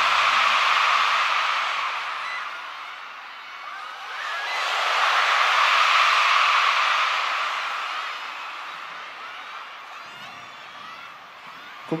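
Arena audience screaming and cheering in two long swells, the second peaking about six seconds in, then dying away to scattered cries.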